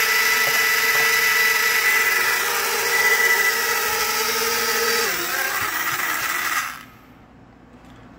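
Eachine E52 pocket quadcopter's four small motors and propellers spinning at speed with a high, steady whine while the drone is held down by hand on a desk. The pitch drops slightly about five seconds in, and the motors cut off suddenly shortly before seven seconds.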